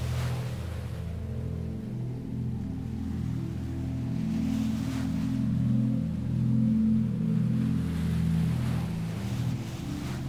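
Ambient music of low, slowly changing sustained chords, with the hiss of ocean waves washing in and fading every few seconds.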